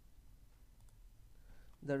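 A few faint computer-mouse clicks over quiet room tone, then a man starts speaking near the end.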